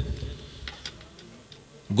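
A gap in a man's speech over a microphone and loudspeakers: the last word's echo dies away, leaving low background noise with a few faint ticks.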